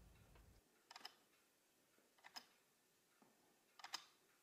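Faint clicks of a key on an old PS/2 QWERTY keyboard pressed three times, about a second and a half apart, each press a quick double click. The key is the caps lock, toggling the keyboard's lock lights.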